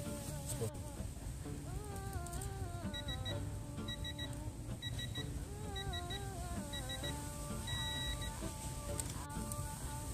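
Digital torque socket adapter beeping in short, evenly pitched beeps about once a second as a lug nut is tightened toward its set torque, then giving a longer tone about 8 seconds in as the target is reached. Background music with a wavering melody plays throughout.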